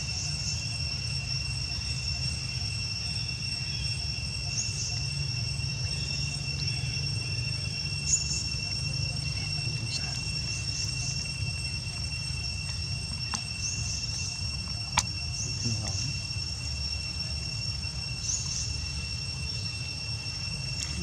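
Insects calling steadily, one unbroken high-pitched whine, over a low steady rumble. Two sharp clicks stand out, one near the middle and one about three quarters of the way in.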